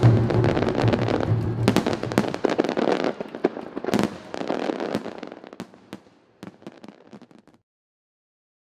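Fireworks bursting and crackling: a dense crackle with a few louder bangs, thinning out and fading to silence near the end. A music track with a low sustained note stops in the first second or two.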